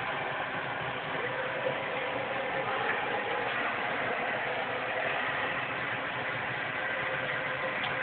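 High-pressure LPG gas burner running steadily under a steel-drum steam sterilizer, a constant even rush of noise with no breaks.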